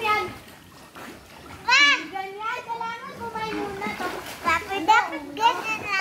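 Children's high-pitched voices calling and shouting, with water splashing in a swimming pool underneath.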